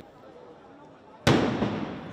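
A faint crowd hum, then a single sudden loud blast about a second in whose noise carries on to the end: an explosion in the midst of a large crowd, one of the walkie-talkie detonations targeting Hezbollah members.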